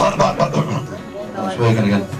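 A man speaking into a handheld microphone, his voice coming through the room's PA, with a cough right at the start.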